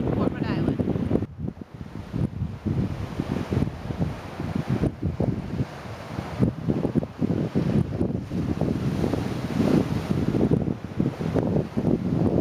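Wind gusting across the camera's microphone in uneven rumbling blasts, with ocean surf washing against the shore rocks underneath.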